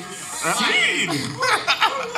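Men chuckling and laughing into microphones, mixed in with bits of speech.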